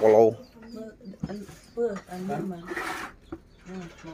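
A man's voice stops about a moment in, followed by quieter talking in the background and a brief rustling noise near three seconds.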